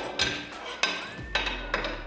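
Metal parts of a Mk 19 grenade launcher clicking and knocking together as a drive arm is worked into the feed assembly, with about four sharp knocks.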